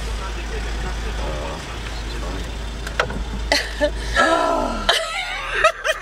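Low steady rumble of a car, heard from inside the cabin, which drops away about four seconds in, with muffled voices and a brief laugh over it.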